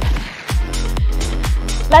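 Background music with a steady beat, with a brief dip in level about a third of a second in.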